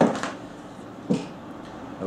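Handling noise from a hardcover book as its cover is being taken off: a sharp sound at the start and another short one about a second in.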